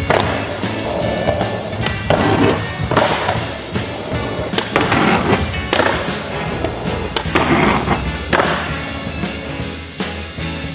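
Skateboard on a concrete floor: wheels rolling, with several sharp pops and landings from flip tricks, over background music.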